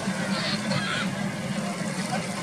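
Jet ski engine running at speed, a steady drone, with people talking over it.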